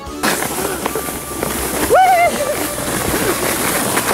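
Steady rushing hiss of a runner sledge sliding down packed snow, with a person's high shout about two seconds in.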